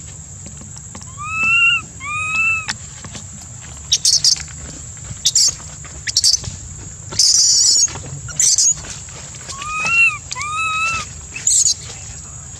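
Baby macaque crying: two pairs of short, arching, whistle-like cries, one pair near the start and one near the end, the distress cries of an infant refused milk by its mother. Short, loud, scratchy noisy bursts fall between the cries, and a steady high whine runs underneath.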